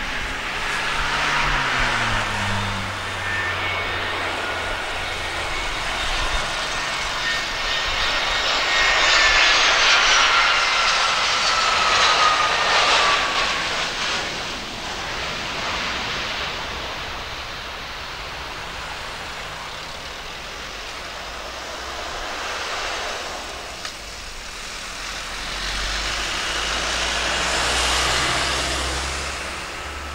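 Airbus A320 with CFM56 jet engines landing: engine whine and roar grow as it passes close on final approach, the whine falling in pitch as it goes by. A broad jet rumble follows as it rolls out down the runway, swelling again near the end.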